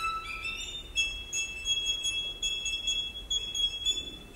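Two solo violins playing very high, thin notes together, a string of short notes moving in parallel. They play quietly, with little beneath them.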